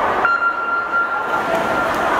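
Electronic race-start beep: one steady electronic tone held about a second and a half, sounding as the swimmers leave the blocks. The crowd noise in the pool hall rises again near the end.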